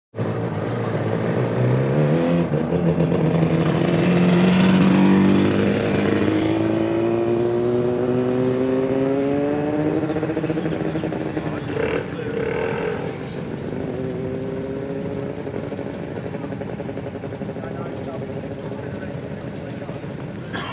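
Motor scooter engines running, one engine's note holding steady and then climbing steadily in pitch as it speeds up, before fading toward the end.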